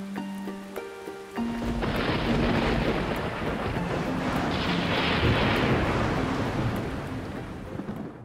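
Logo sting: a few clear musical notes, then from about a second and a half in a rolling thunderstorm sound effect, rain rushing with a low rumble, swelling again midway, with musical tones still sounding under it.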